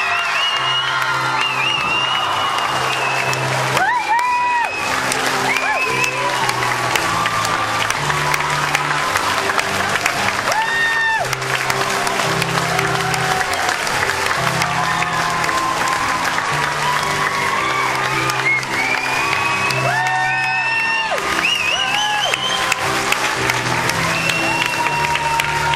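Audience applauding over steady instrumental curtain-call music, with voices cheering above the clapping several times.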